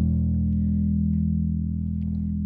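Open low E string of an electric bass ringing out through a Laney RB3 bass combo amp: one sustained low note, struck just before and fading slowly.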